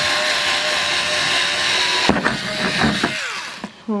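Cordless drill running with a twist bit boring through a thin metal mason jar lid, a steady high whine that stops about two seconds in. A few knocks and clatters follow.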